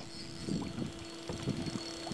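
Boat's electric trolling motor whining steadily at one even pitch, with a few faint clicks.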